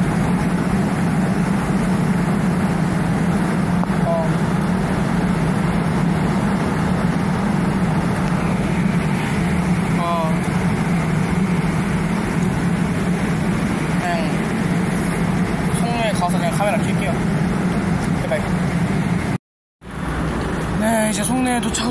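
Korail commuter electric train at a station platform, giving a steady, loud hum and rumble. The sound cuts out briefly near the end.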